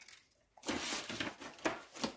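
Cardstock being handled and cut: a scratchy paper rustle that starts about half a second in and lasts about a second, with a sharper click near the end.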